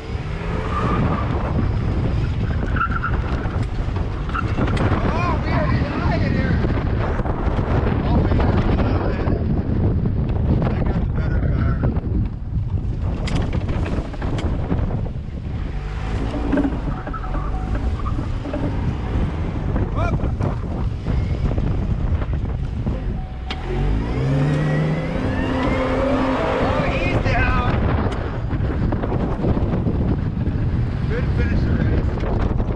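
Car being driven hard in a dirt-track race, engine working under load with heavy wind buffeting on a camera held out the driver's window and tyres on loose dirt. Near 24 seconds in, the engine's pitch rises as it revs.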